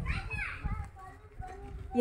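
Faint voices of people nearby, a child's among them, under a low rumble.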